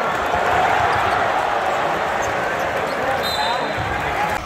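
Steady crowd noise in a packed basketball arena, a constant din of many voices, with a basketball being bounced on the court.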